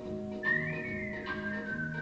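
Jazz band playing: a clarinet holds a high note that scoops up about a quarter of the way in, then eases down and holds, over bass guitar notes and light drums.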